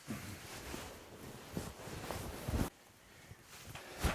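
A fabric hammock being tugged and shaken by hand: cloth rustling with small clicks, and a dull thump about two and a half seconds in.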